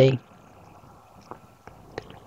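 A spoken word ends, then a pause of quiet room tone with a faint steady hum and a few small clicks.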